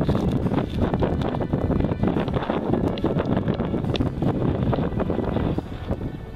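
Wind buffeting the camera's microphone in steady gusts, a loud, low rumbling roar.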